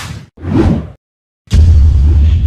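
Logo-reveal sound effects: a whoosh, then a second swelling whoosh, and after a short silence a sudden loud, deep boom that rumbles on.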